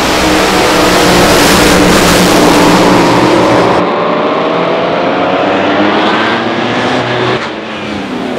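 Two supercharged, nitromethane-burning front-engine Top Fuel dragsters launching at full throttle and running the length of the strip side by side, very loud, the engine note climbing in pitch as they accelerate and dropping away near the end as they shut off.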